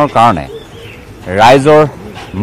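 A man's voice: a short falling syllable at the start, then a longer, louder drawn-out vowel in the middle.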